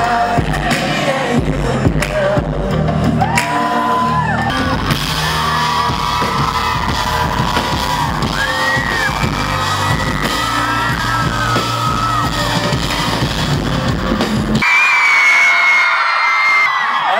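Live pop band music with drums, bass and singing, over screaming from the audience. About fifteen seconds in the band stops and the crowd's screams and cheers carry on alone.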